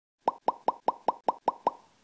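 A rapid run of eight cartoon pop sound effects, about five a second, each a short rising bloop.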